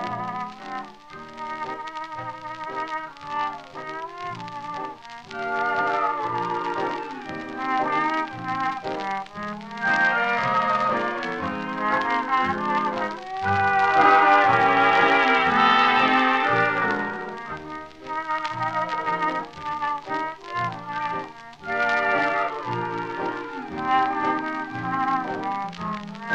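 Orchestral music from a 1943 recording, with brass to the fore and the treble cut off as on an old disc. It swells loudest a little past the middle.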